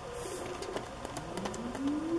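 Quiet paper handling: pages of a spiral-bound smash book being turned and pressed flat by hand. A faint tone rises in pitch over the second half.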